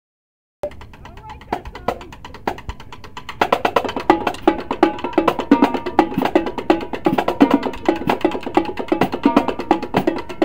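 A marching drumline playing a cadence on snare, tenor quads, pitched bass drums and cymbals. There are a few sparse hits at first. About three seconds in, the full line comes in with a fast, dense rhythm.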